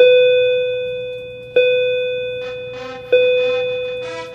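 A bell-like chime rings three times, about a second and a half apart, each stroke fading slowly. Music begins faintly near the end.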